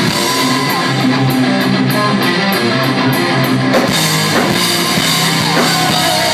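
A rock band playing a song live and loud, with electric guitars, bass guitar and drum kit.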